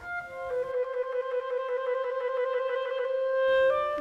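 Solo clarinet playing a short note, then one long held note that swells slightly, moving to a new note near the end.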